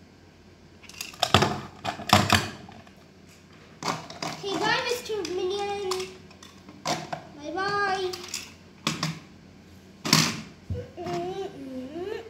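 Hard plastic toy tools being handled, giving several sharp clicks and knocks, the loudest in the first few seconds and again about ten seconds in. Between them come short wordless vocal sounds from a child.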